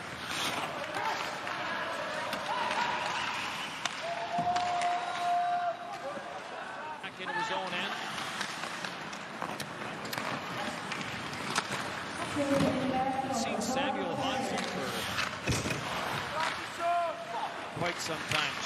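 Ice hockey arena game sound: skates and sticks on the ice with scattered sharp puck and stick clacks, under indistinct voices and crowd murmur. A single held tone sounds for about a second and a half, about four seconds in.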